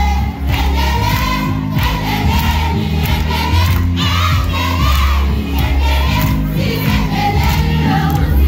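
A crowd of children singing along loudly to amplified music with a steady, heavy bass line, many voices together.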